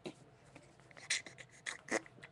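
Beatboxing: quiet mouth percussion of short, irregular hissy clicks and snare-like bursts, with a few louder hits about a second in and near the end.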